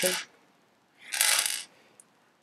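Small pebbles rattling and scraping against each other and the paper as a hand gathers several of them off a paper counting board: one short clatter lasting under a second.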